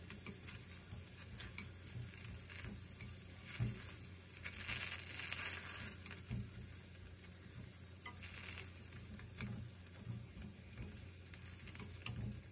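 Faint sizzle of food frying in a ceramic-coated frying pan, with wooden chopsticks tapping and scraping against the pan as the pieces are turned. The sizzle swells for a moment about halfway through and again a few seconds later.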